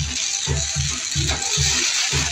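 Music with a fast, steady bass beat, about four to five beats a second, over the steady hiss of sparks jetting from a burning fireworks castle.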